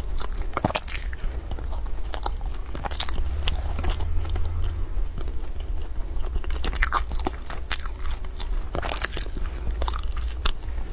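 Close-miked biting and chewing of a crisp, flaky pastry: clusters of irregular crunches and crackles over a steady low hum.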